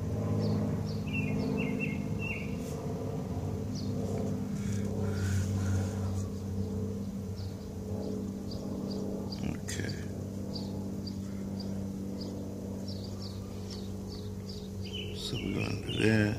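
Small birds chirping in short high calls, scattered and thickest in the last few seconds, over a steady low mechanical hum.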